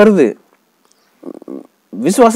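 A man speaking, trailing off about a third of a second in, then a pause broken by a short, quieter voiced sound before his speech resumes at the end.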